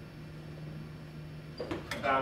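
Room tone in a lecture hall: a steady low hum, with a few sharp clicks in the last half-second.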